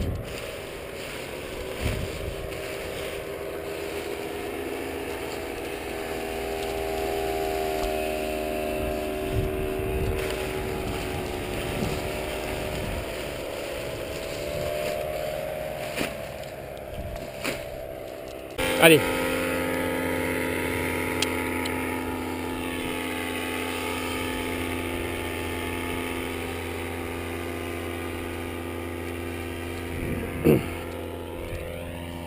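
Paramotor engine running at idle, its pitch wavering slightly. About two-thirds of the way in, a louder, steadier engine note comes in abruptly with a sharp knock.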